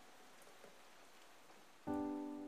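Faint hiss as the film's music dies away, then near the end a loud sustained musical chord strikes and rings on: the start of the channel's outro jingle.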